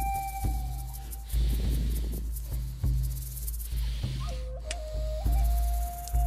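Deep, paced breaths in and out, as in Wim Hof-style breathwork, each a swell of breathy rushing noise, over background music with a held flute-like melody and a low drone.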